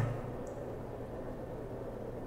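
Faint steady background hiss between spoken lines, with no distinct sound event.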